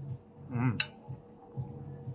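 Eating fish soup: a brief hummed vocal sound, then one sharp click of a spoon against the bowl, over a faint steady hum.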